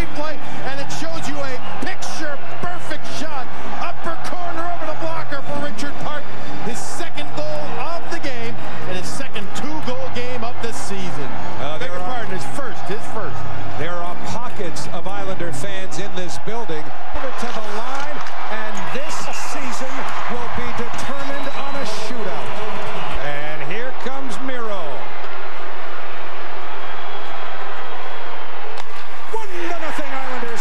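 Ice hockey arena broadcast sound: crowd noise with music over the arena PA for the first half. After that come crowd voices with sharp clicks of sticks and puck during play.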